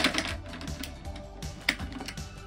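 Hard plastic clicks and rattles of a Transformers Blaster toy's parts being folded by hand, with a sharp click right at the start and another about one and a half seconds later, over background music.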